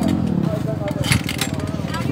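A motorcycle engine running steadily with an even, rapid pulse and no revving, with faint voices behind it.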